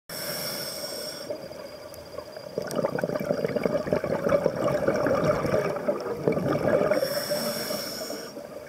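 Scuba diver breathing through a regulator underwater. A hissing inhale through the regulator is followed by a long exhale of bubbles crackling and gurgling out for about four seconds, then another inhale near the end.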